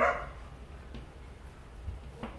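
A dog's single short bark right at the start, then quiet with a few faint taps and rustles of burlap strips being braided by hand.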